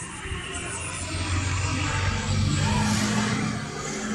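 A motor vehicle driving past, its engine hum growing louder to a peak about three seconds in, then fading.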